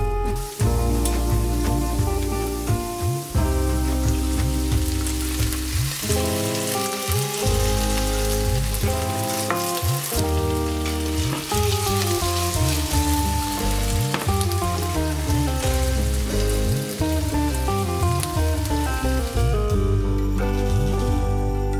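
Diced potatoes frying in hot oil in a pan, a steady sizzle, over background music with a bass line and melody.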